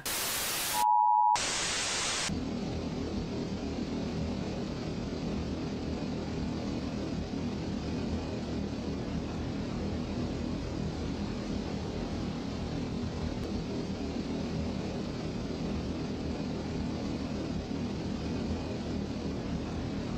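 A loud burst of static, cut by a short beep in a moment of silence, then more static. After about two seconds it gives way to a steady droning hum with a noisy, buzzing edge: the Hypnotoad's drone sound effect.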